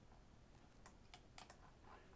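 Near silence, with a few faint, short clicks from working a computer in the second half.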